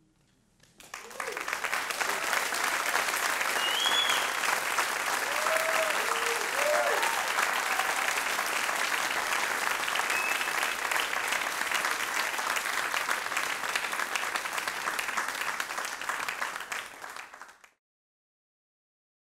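Theatre audience applauding, rising in about a second and holding steady, with a whistle and a few cheers in the first seconds; it cuts off abruptly near the end.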